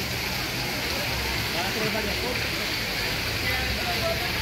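Tiered fountain's water falling and splashing steadily into its basin, with voices of people talking in the background.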